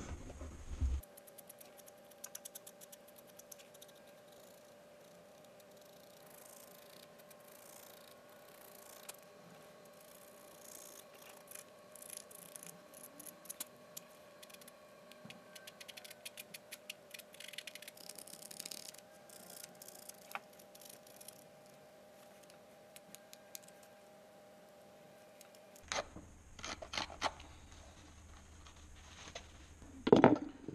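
Hand stitch groover cutting a channel along the edge of a leather outer sole: faint, irregular scratchy scrapes and clicks as the blade is drawn through the leather.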